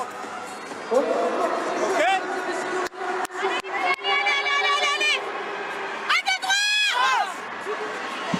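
Players' voices in a handball team huddle at the end of a timeout, with a few sharp claps, then a woman's long, loud, high-pitched shout near the end, over steady arena crowd noise.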